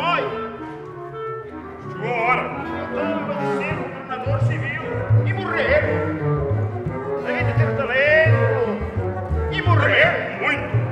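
Small instrumental ensemble playing while a man declaims over it in a dramatic voice. From about four seconds in, a low note pulses steadily under the music.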